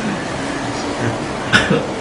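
A man coughs once, sharply, about one and a half seconds in, over a steady hiss of room noise.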